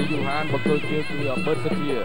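Traditional ringside music for a Kun Khmer fight: a reedy oboe-like wind instrument plays a wavering, bending melody over the ensemble.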